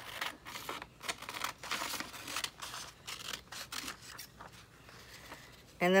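Scissors cutting through a glossy magazine page: a steady run of short snips, about three a second, that die away about four and a half seconds in.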